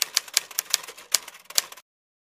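A quick, irregular run of sharp clicks and taps, about five or six a second, that cuts off suddenly near the end.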